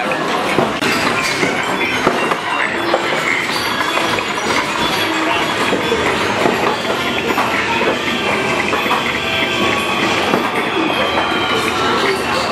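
Big Bass Wheel arcade game's wheel spinning, its pointer clacking rapidly against the pegs, over the loud din of a busy arcade.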